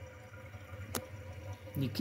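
Quiet workshop room tone with a faint steady hum and a single sharp click about a second in; a man's voice starts near the end.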